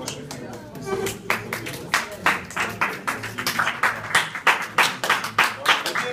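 Hand clapping from a few people, starting about a second in and going on as a run of distinct claps, roughly three a second.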